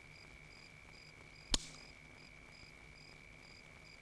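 Faint insect chirping, a steady high tone with a higher note pulsing about twice a second, broken by one sharp click about a second and a half in.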